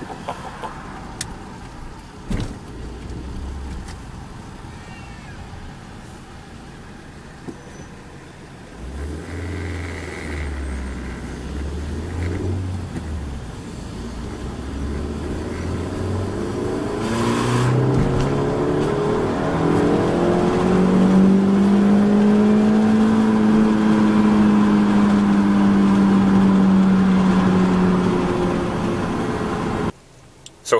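Suzuki SX4's four-cylinder engine heard from inside the cabin: running low and easy at first, then at wide-open throttle in second gear, its note rising steadily about halfway through and held high near redline for several seconds before easing near the end. A sharp click sounds a couple of seconds in.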